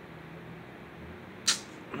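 Phone being handled close to its microphone: low steady room hum, with one short, sharp hiss about one and a half seconds in.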